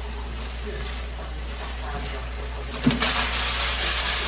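Chicken strips frying in oil in a wok, a steady sizzle that grows louder about three seconds in, with a brief knock at that point as the pan is handled.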